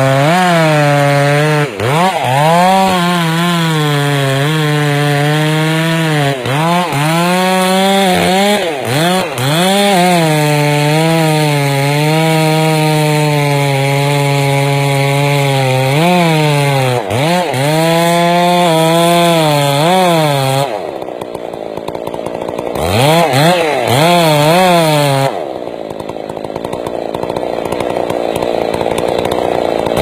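Two-stroke chainsaw at full throttle cutting into a large tree trunk, its engine pitch sagging and recovering again and again as the chain bogs in the wood. About two-thirds of the way through it drops to a rougher idle, revs up briefly, then falls back to idle.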